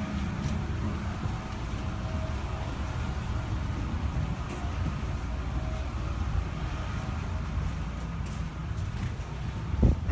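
Wind buffeting the microphone on an open deck: a steady low rumble that swells and dips, with a faint hiss above it.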